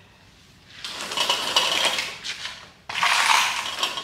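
Metal clattering and rattling from a bead roller's steel parts being handled, in two stretches; the second starts abruptly about three seconds in.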